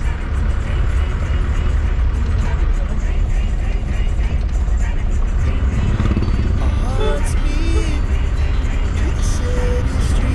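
A car driving along a street: a steady low engine and road rumble throughout, with music and a voice over it for a few seconds near the middle.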